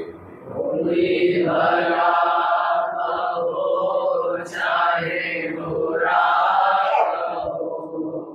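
Devotional chanting: a voice intoning a mantra in long, held, melodic phrases, with brief breaks about three and five seconds in.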